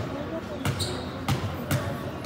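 A basketball bounced on a hardwood gym floor by a free-throw shooter dribbling before the shot, three sharp bounces with the echo of a large gym, over background voices.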